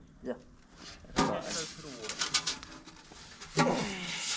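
Knocks and clicks from a large aluminium pipe being handled, the sharpest about a second in and again near the end, with men's voices.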